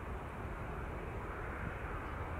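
Jet airliner engine noise, a steady rumble with no clear rise or fall.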